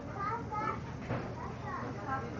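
Quiet background chatter of several people talking in a room, some of the voices high-pitched, with no one voice in front.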